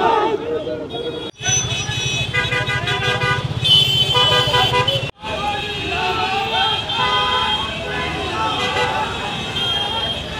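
A crowd of men shouting and cheering over several vehicle horns honking in steady tones, with the sound cutting off abruptly twice.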